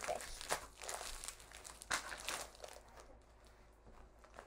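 Plastic snack bag of Goldfish crackers crinkling as it is squeezed and tugged in a struggle to tear it open. There are sharper crackles about half a second and two seconds in, and it quietens near the end.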